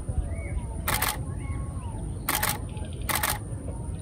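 Canon 5D Mark IV DSLR shutter firing in three short bursts of clicks: about a second in, at about two and a third seconds, and just after three seconds.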